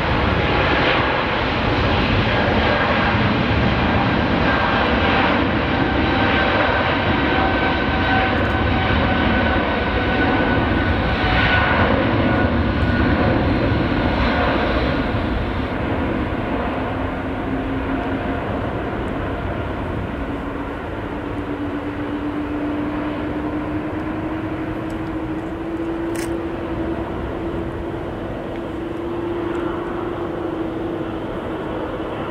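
Twin jet engines of a Boeing 777 freighter at takeoff thrust during the takeoff roll and lift-off. A steady loud jet noise carries whining tones that slowly fall in pitch; it eases a little about halfway, after which a low hum climbs slowly in pitch.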